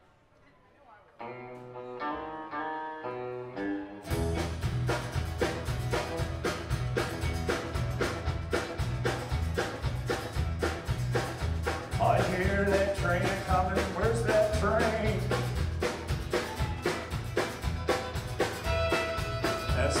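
Live country band music: a short solo lead-in of single notes, then about four seconds in the drums, bass and guitars come in on a steady driving beat. A fiddle plays sliding, bending notes over the band midway through.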